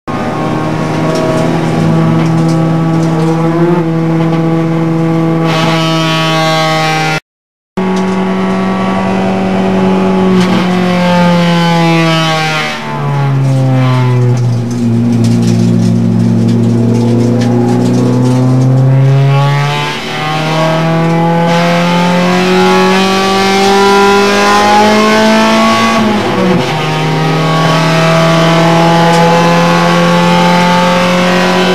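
Honda Civic EG6's B16A four-cylinder engine heard from inside the cabin on track, its note holding, dropping and climbing again through gear changes at an easy warm-up pace. The sound cuts out briefly about seven seconds in.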